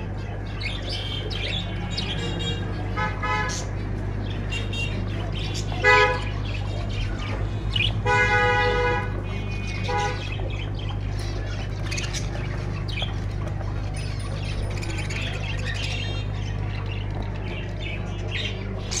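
Caged finches and budgerigars chirping continuously, with a vehicle horn sounding several times: short toots about 3 and 6 seconds in, a longer one of about a second just after the middle, and another soon after. A steady low hum runs underneath.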